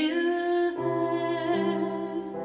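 A woman singing a spiritual, holding one long note with a slight waver, over piano accompaniment that comes in underneath about halfway through.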